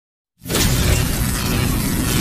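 Channel-logo intro sound effect: after a brief silence it starts suddenly with a loud crashing, hissing noise over a deep rumble, which carries on steadily.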